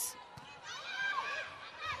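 Indoor volleyball rally: a single short thump of the ball being played a little under half a second in, then voices calling out in the arena.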